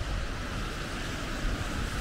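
Steady outdoor street noise on a wet night: wind rumbling on the microphone over a faint, even hiss from the wet city street.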